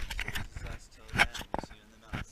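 Knocks and rustling from a handheld camera being moved around, with several sharp handling bumps, the loudest about a second in, and brief fragments of voices.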